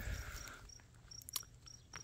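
Faint cricket chirping: short, high chirps repeated evenly about three times a second. A soft rustle fades out in the first half second, and there are a couple of light clicks midway.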